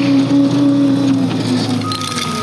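Bobcat compact track loader's diesel engine running steadily while the raised bucket is tipped, soil starting to spill from it near the end.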